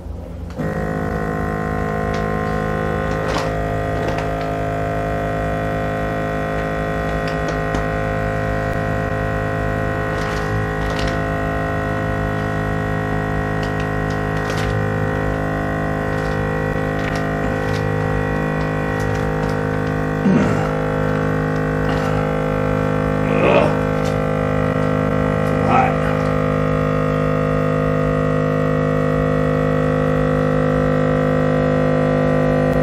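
Vacuum sealer's pump running with a steady drone as it draws the air out of a bag; it starts about half a second in and holds without a break. Three brief sounds come in the last third.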